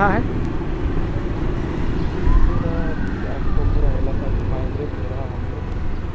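Steady low rumble of a vehicle moving along a road. A faint wail rises and then falls in pitch between about two and four seconds in.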